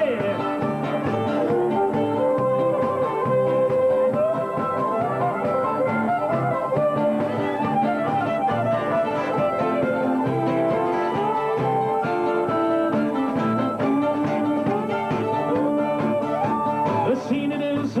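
Live bush band playing an instrumental break between verses of a shearing song: a lead melody over strummed guitars and drums.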